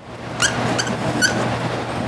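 Dry-erase marker writing on a whiteboard: a scratchy rubbing broken by a few short squeaks.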